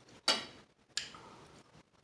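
A metal spoon clicking twice against a serving platter as it is set down, the first click louder.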